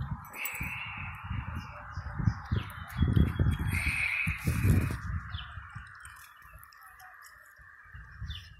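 Birds calling, with two short higher calls about half a second and four seconds in, over a steady mid-pitched background drone and irregular low rumbles.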